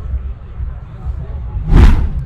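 Low steady rumble of wind on the microphone, broken near the end by a brief loud whoosh.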